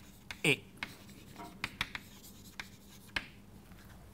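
Chalk writing on a blackboard: a string of short, sharp taps and scrapes as a line of text is written, most of them in the first two seconds.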